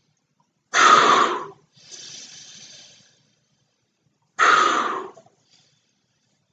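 A man inflating a huge latex weather balloon by mouth: two loud, short rushes of breath about three and a half seconds apart, with a longer, quieter rush of air between them.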